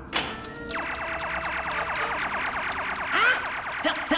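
Cartoon electronic sound effect of a bomb being armed at the press of a button: a fast, evenly pulsing warbling tone starts under a second in and keeps repeating, with a quick ticking over it.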